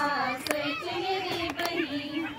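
High voices singing a folk-style song in long, wavering held notes, with a few sharp clicks in between.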